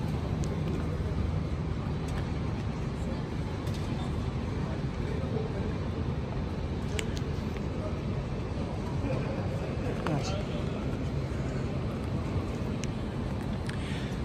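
Steady city ambience: a low hum of traffic and the city, with faint voices of passers-by around ten seconds in.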